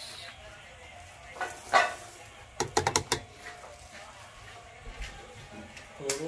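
Granulated sugar poured from a plastic cup into a metal popcorn pot holding corn kernels, with short pouring rushes followed by a quick run of light clicks a little before halfway through.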